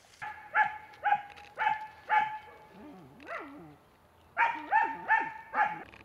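An animal calling in two quick runs of short, high, pitched calls, about two a second, with a lower, wavering call between the runs.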